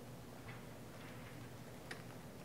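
Quiet room tone with a faint steady low hum and two faint clicks, the sharper one near the end.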